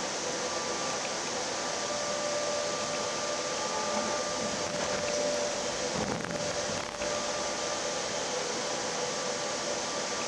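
Steady running noise inside a moving light-rail train's cabin, with faint steady whining tones from the train's drive over the rush. A brief change in the noise about six to seven seconds in.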